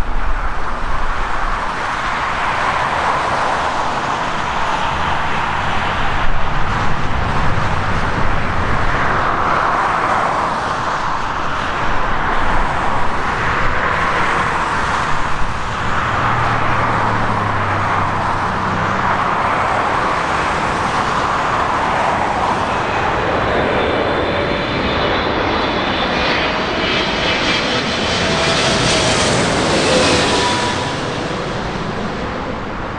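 Jet engines of twin-engine airliners on low final approach, a loud, steady noise that swells and eases as aircraft pass. Near the end a rising whine of engine fan tones grows as another jet comes in low overhead.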